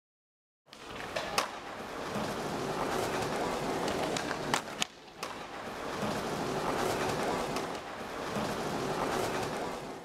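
Skateboards rolling on stone plaza paving over a noisy open-air background, starting abruptly just under a second in. A few sharp clacks of boards striking the ground stand out, about a second and a half in and again around five seconds in.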